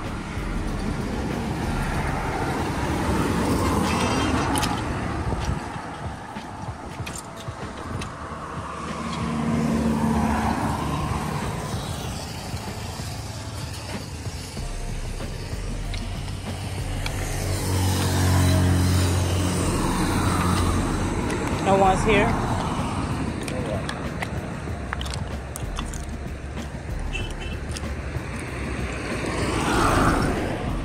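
Road traffic: cars driving past one after another, each swelling up and fading over a few seconds, the loudest with a low engine note about two-thirds of the way in and another passing near the end.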